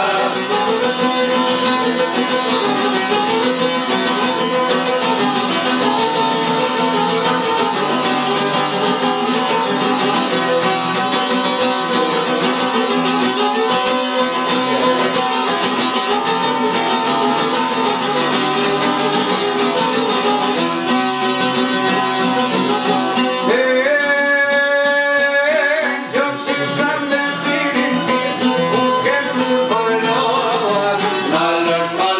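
Albanian folk music on çiftelia, long-necked two-string plucked lutes, playing a busy plucked melody over a steady drone note. A long held note stands out a little after the middle.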